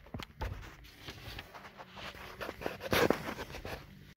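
Scattered clicks and rustles of a handheld phone being moved about while a person shifts around inside a car, with a louder rustle about three seconds in.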